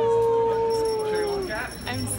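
A person's voice holding one long high "ooh" that slides up at the start, stays on one pitch and then drops off about a second and a half in.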